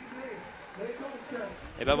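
Faint speech over a low background hum, with a man's voice starting loudly just before the end.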